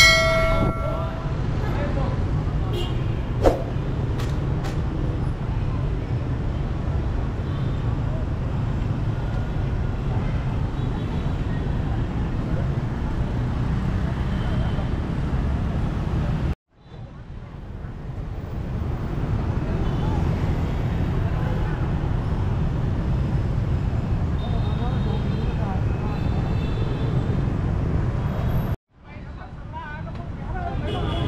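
Busy city-street traffic: a steady rumble of motorbikes and cars, with a short horn toot a few seconds in. The sound cuts out abruptly twice, about halfway through and near the end.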